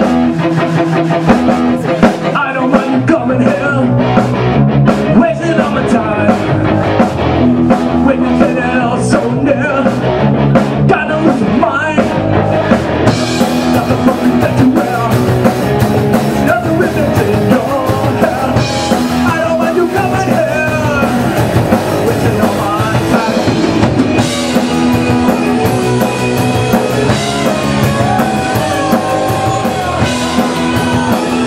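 Live rock band playing electric guitar, bass guitar and drum kit, with a kazoo buzzing a wavering melody line over the top. The cymbals come in brighter about thirteen seconds in.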